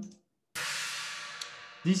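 A 20-inch Wuhan Lion china cymbal struck once about half a second in, ringing on with a bright, trashy wash that fades slowly; a very sustained cymbal sound.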